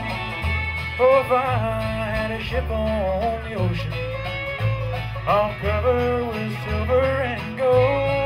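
A bluegrass band of fiddle, banjo, acoustic guitars and upright bass playing live, with an instrumental lead line between sung verses. The upright bass walks between alternating low notes on the beat.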